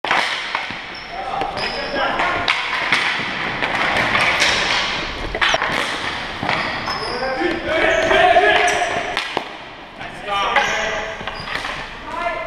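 Ball hockey play on a gym floor: sticks clacking and slapping the ball and the floor in a quick, irregular run of knocks, with sneaker scuffs and players' shouts echoing in the hall, the longest call about eight seconds in.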